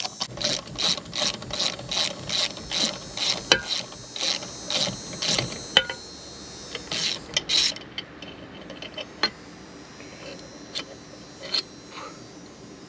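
Socket ratchet clicking at about three clicks a second as a 14 mm bolt is loosened. After about six seconds the clicking breaks off into a few scattered single clicks.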